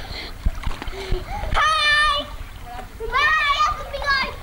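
A child's high voice calling out twice, each call held for about half a second, over splashing water in a swimming pool.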